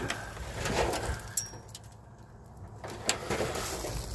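Footsteps and rustling through dry fallen leaves and weeds, with a few light clicks.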